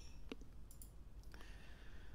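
A couple of faint clicks over quiet room tone.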